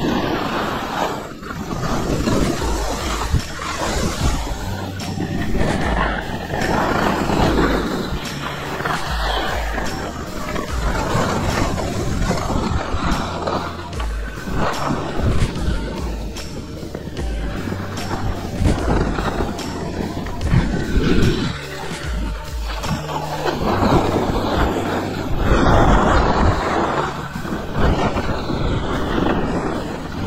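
Wind rushing over the camera microphone as a skier moves downhill, swelling and easing every few seconds, mixed with skis scraping over packed snow. Music with a stepping bass line plays with it.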